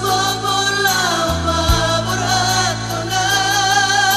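A Batak pop song: singing over a steady bass and keyboard accompaniment, with the bass changing note about a second and a half in.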